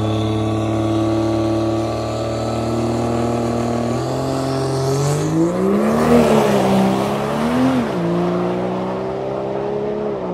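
Diesel pickup truck engine idling, then revved twice around the middle, its pitch climbing and falling each time before settling back to a higher idle and dropping again near the end.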